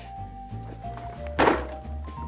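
Light background music with a single thunk about one and a half seconds in: a shoe coming down on a wooden tabletop.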